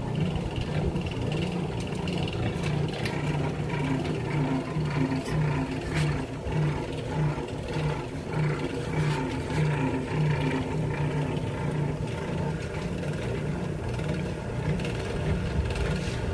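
A motor hums steadily with a regular throb about twice a second, and a few faint clicks sound over it.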